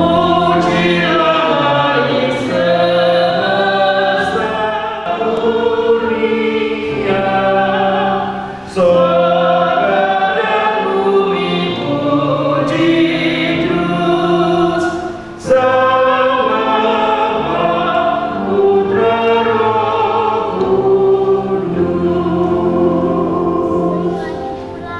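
A choir singing a hymn in several voices, in long phrases with short breaks between them, twice.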